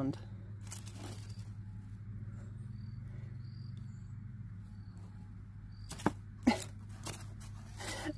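A few faint scrapes and clicks as a small hand sparker is scraped at a fire cube without lighting it, the clearest two about six seconds in, over a steady low hum.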